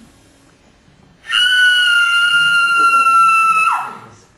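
A loud, high-pitched steady tone starts suddenly about a second in, holds for about two and a half seconds, then drops in pitch as it dies away.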